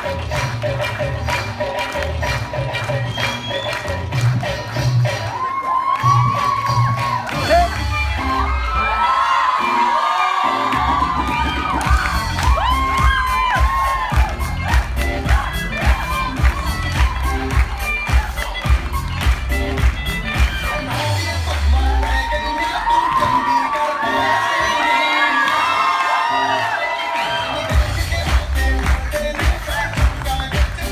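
Loud dance music with a steady beat playing for a stage dance, with an audience cheering over it, most strongly from about six to sixteen seconds in and again from about twenty-one to twenty-seven seconds in.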